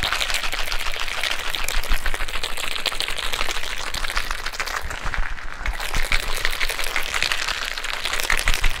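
Ice rattling inside a capped cocktail shaker being shaken hard by hand: a rapid, continuous clatter of cubes against the shaker walls as the mixed shot is chilled.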